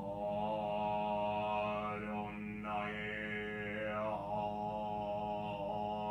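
A man's voice intoning a mantra on one long held note, the vowel shifting a few times as he sings, over a steady low hum.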